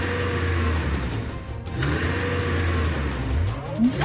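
A car engine sound effect running steadily over background music, with a tone rising in pitch near the end.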